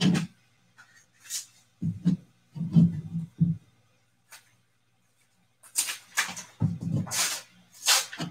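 A brown kraft paper envelope being handled and torn open by hand, with a few soft handling knocks in the first half and a run of paper rustling and tearing in the last two seconds or so. A faint steady hum runs underneath.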